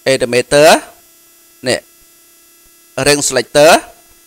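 A man's voice speaking in short bursts over a faint, steady electrical hum from the recording chain.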